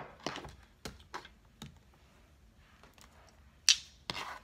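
Tarot cards being handled, making a scattered series of sharp taps and clicks: several in the first second and a half, then a louder one near the end.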